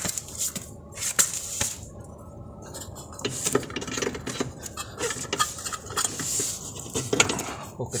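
Irregular metallic clinks and knocks from metal parts and tools on a car's front suspension as the lower control arm is worked free of the steering knuckle.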